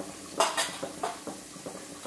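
A steel spoon clinking against a clay cooking pot as chilli flakes are tipped into hot oil: one sharp clink about half a second in, then a few lighter taps, over a faint sizzle of frying oil.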